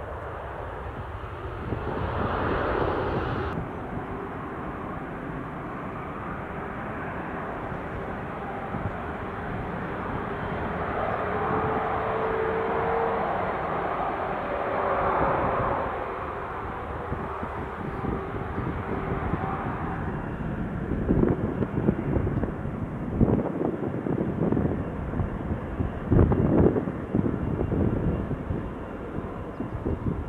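Jet airliner engines running loud and close, a steady noise with a faint whine. In the last third, gusty buffets hit the microphone.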